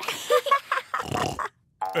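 Cartoon pig character grunting and snorting in puzzlement, a string of short sounds that stops about one and a half seconds in.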